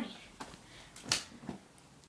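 Three short thumps about half a second apart, the middle one loudest, as a person scuffles and strikes at something by hand or foot.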